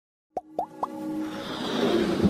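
Three quick rising pop blips, each pitched a little higher than the last, followed by a swelling musical riser that builds up: the sound effects of an animated logo intro.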